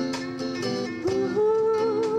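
A woman sings with acoustic guitar accompaniment. She sings a few short notes, then rises into a long held note with vibrato about halfway through, over steadily strummed acoustic guitars.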